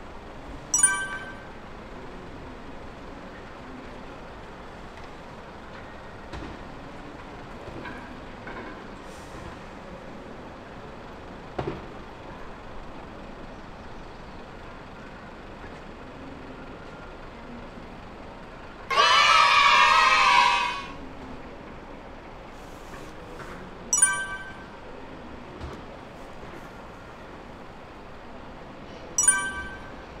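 A parked coach's compressed-air system letting out a loud hiss with a whistling edge, lasting about two seconds, that starts and stops abruptly about two-thirds of the way in, over a low steady outdoor background. A few short, high chirps come about a second in and twice near the end.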